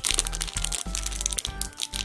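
Foil Pokémon card booster pack wrapper crinkling in irregular bursts as fingers pick and tug at it to tear it open, over background music.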